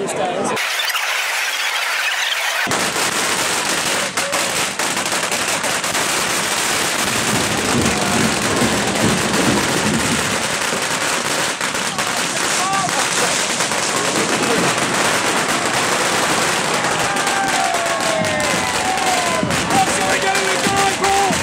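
Firecrackers banging and crackling again and again over the noise of a dense street crowd's voices.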